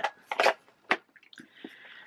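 Handling noise from a small wooden jewellery box: a sharp click about a second in, then a short soft rustle near the end.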